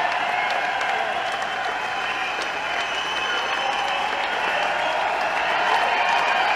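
A large audience applauding steadily, a dense even clapping that swells a little near the end.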